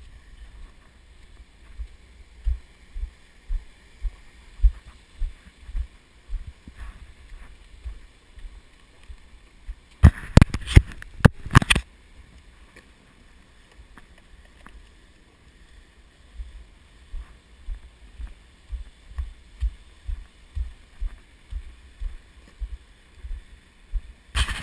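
Footsteps on a trail jolting a body-worn action camera: dull low thumps about two a second. About ten seconds in comes a short run of loud sharp knocks and scrapes, the camera housing or mount being bumped.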